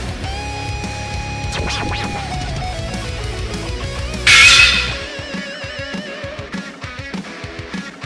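Background rock music with guitar. A loud burst comes about four seconds in, and after it the low bass drops away.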